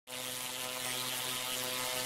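Electric sparks buzzing and crackling: a steady hum under a dense hiss that starts abruptly and holds level.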